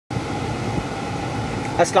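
Steady, even hum inside a 2019 Bentley's cabin with the air conditioning running; a man starts speaking near the end.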